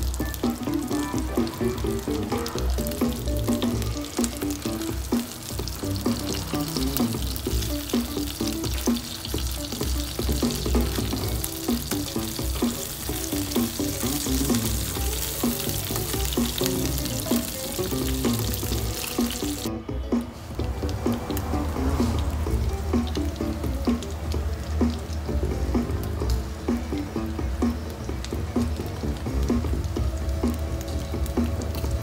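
Food frying in oil in a pan, with background music playing over it. The sizzle drops away suddenly about two-thirds of the way through, leaving mostly the music.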